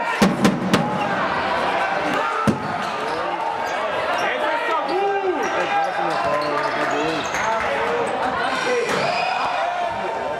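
Many spectators' voices talking over one another in a sports hall, with a few quick sharp knocks in the first second and a single loud knock about two and a half seconds in, of a ball bouncing on the hall floor.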